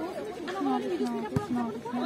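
Many voices chattering and calling out at once around a volleyball game, with one sharp smack of the volleyball being hit about a second and a half in.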